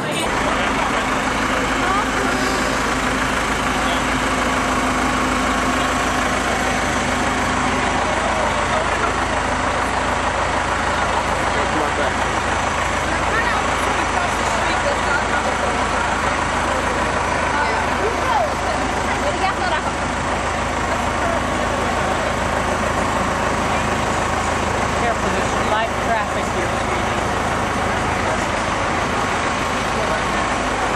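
A large vehicle's engine idling close by, a steady low hum, under the indistinct chatter of a walking crowd.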